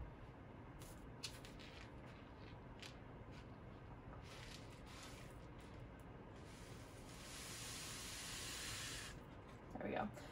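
Uncooked rice sliding off a folded sheet of paper into a glass jar: a soft, steady hiss of pouring grains for about two and a half seconds, starting past the middle. Before it come a few faint clicks and scrapes as the rice is gathered on the paper.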